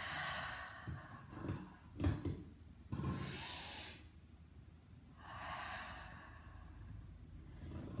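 A woman breathing audibly and slowly during a Pilates bridge with her feet on an exercise ball: three long breaths, the loudest and hissiest about three seconds in as her pelvis rises. A couple of soft low knocks from her body shifting on the mat come between the first two breaths.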